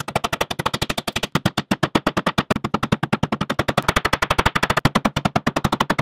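Black rubber mallet tapping glued hardwood inlay pieces down into their routed pockets in a wooden panel. The blows come in a fast, even run of about a dozen a second, which starts and stops abruptly.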